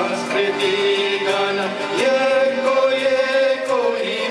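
A group of men and women singing an opening song together, holding long notes. The melody steps up to a higher note about halfway through.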